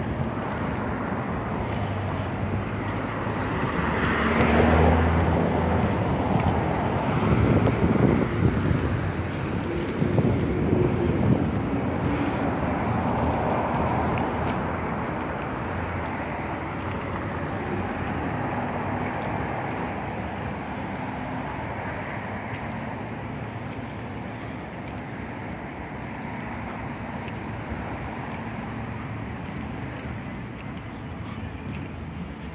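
Road traffic: a vehicle passes with a swell of engine and tyre noise about four to eight seconds in, then steady traffic noise that slowly gets quieter.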